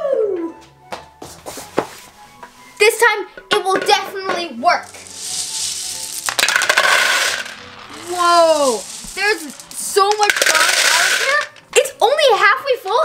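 Handfuls of hard gumballs clattering into a clear plastic bowl in two longer bursts, with a few single clicks before them, over background music.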